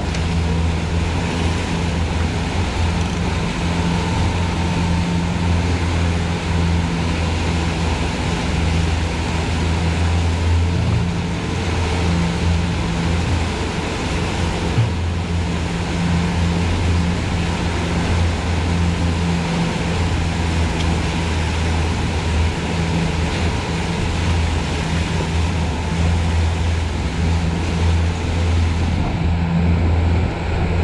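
Twin outboard motors running steadily under way, a constant low engine drone, over the rush of the churning wake and the wind.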